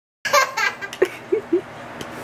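A toddler laughing hard: a loud run of high-pitched laughs, then a few short, quieter bursts.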